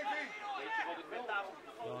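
Speech only: a man commentating in Dutch on football play.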